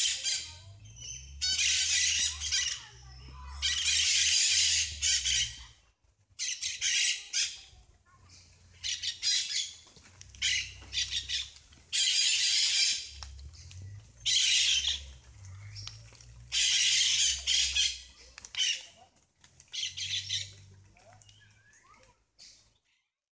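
A caged bird squawking harshly over and over: about a dozen loud calls, each under a second, with short pauses between.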